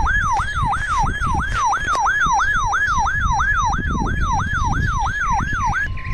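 Weather radio receiver's electronic alert alarm set off by a weekly test signal: a siren-like tone sweeping up and down about three times a second, ending near the end with a short steady tone.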